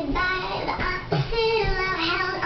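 A high-pitched singing voice over music, its pitch sliding up and down from syllable to syllable.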